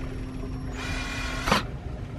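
Cordless drill-driver running briefly at low speed, driving a bolt into a nut held underneath to fasten a stabilizer fin to an outboard's cavitation plate. The run ends in a sharp click about a second and a half in.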